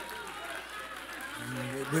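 A lull in a man's preaching over a microphone, with faint voices from the congregation; the preacher starts speaking again near the end.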